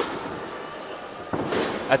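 Hall noise from a wrestling crowd, with a sharp impact in the ring about a second and a half in.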